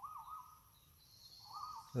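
A wild bird calling: a faint, wavering whistled phrase at the start, repeated near the end, with a faint high hiss behind it in the second half.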